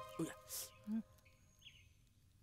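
A quiet yard with a few faint short sounds in the first second, one a brief rustle. A bird chirps once faintly past the middle.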